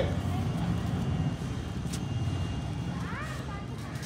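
Wind rumbling on the microphone: a low, steady rumble that slowly eases off.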